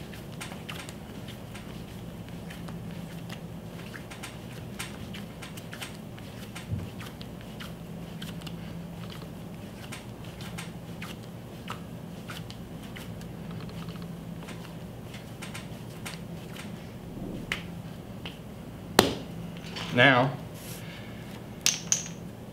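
Clay being wedged by hand on a plaster slab: quiet, irregular pressing and soft knocks as the ball is pushed down into itself over and over, over a steady low hum. Near the end there is one sharp click.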